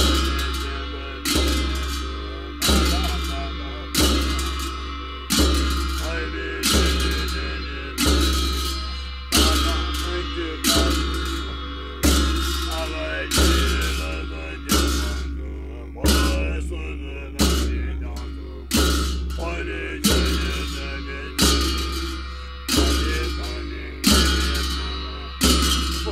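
A large Tibetan ritual drum and cymbals struck together in a slow, even beat, about one stroke every second and a half. Each stroke is a deep thump with a cymbal clash that rings and fades before the next, the steady pulse of a monastic ritual.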